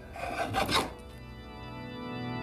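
One scraping stroke of a woodworking hand tool along a wooden board, lasting under a second near the start, over sustained organ music.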